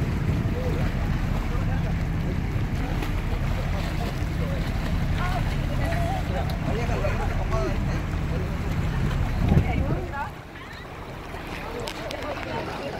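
An excursion boat's engine running at idle, a steady low rumble, with the distant chatter of the snorkelers in the water. The rumble drops away about ten seconds in.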